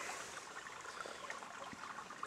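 Faint, steady rush of flowing river water.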